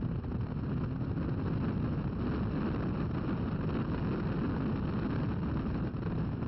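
Inside the open cockpit of a Toyota MR2 Spyder at track speed: its mid-mounted four-cylinder engine running hard, mixed with wind buffeting on the microphone. It is a steady, dense rumble with no break.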